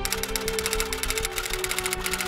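Rapid typewriter key clatter, about a dozen strikes a second, over background music with steady held tones.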